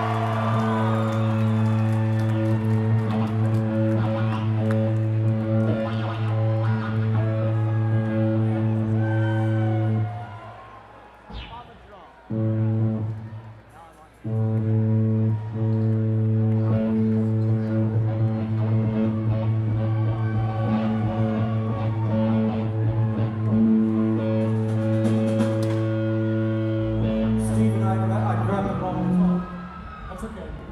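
A live band holding a single sustained low droning note with even overtones through the hall PA. It cuts out about ten seconds in, returns for a short burst, then holds steadily again, over faint crowd chatter.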